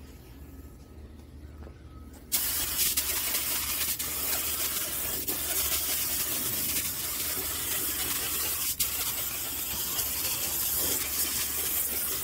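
Compressed-air paint spray gun hissing steadily as it sprays a coat of thinned gray house paint, starting suddenly about two seconds in, with a brief break in the spray about nine seconds in.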